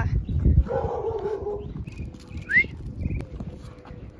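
A dog whining: a short whine about a second in, then a brief high rising whimper a little past the middle, over low wind and street noise.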